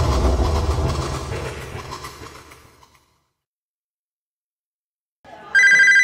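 A deep, noisy sound-effect hit that fades away over about three seconds. After a gap, a telephone starts ringing near the end: a loud, steady, high-pitched electronic ring.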